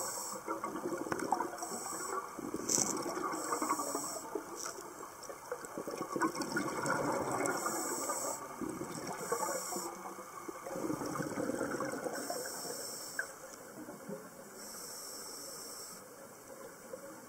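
Scuba diver breathing through a regulator underwater: a short hiss on each inhale and a gush of exhaled bubbles after it, repeating every few seconds.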